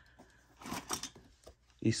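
Brief rustling and light clinking of hand tools as a pair of scissors is drawn out of a pocket of a fabric tool tote.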